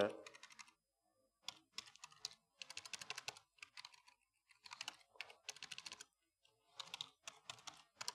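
Typing on a computer keyboard: faint, irregular runs of keystrokes with short pauses between them, beginning about a second and a half in.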